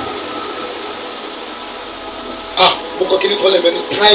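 A man's voice in a church hall: a short loud exclamation, "Ah," about two and a half seconds in, then more talk, over a faint steady drone of held tones.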